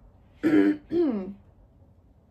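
A woman clearing her throat: two short vocal sounds about half a second apart, the first starting with a rasp, the second falling in pitch.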